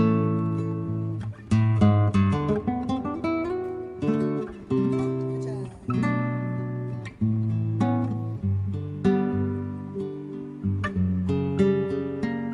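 Solo acoustic guitar playing: strummed chords and runs of plucked notes, each strong chord ringing out and fading before the next.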